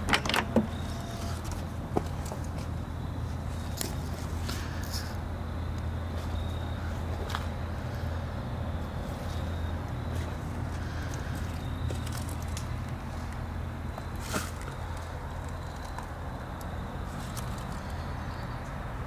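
Steady low background rumble, with a cluster of clicks and knocks right at the start and a few single knocks later, as the rear door of an old hearse is opened and handled.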